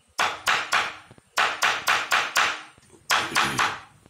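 Hammer blows on a tool held against a German silver (nickel silver) sheet, the metal working over a wooden frame: three quick bursts of sharp strikes, about four a second, each with a short metallic ring.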